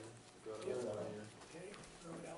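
A quiet, indistinct voice murmuring for under a second, starting about half a second in.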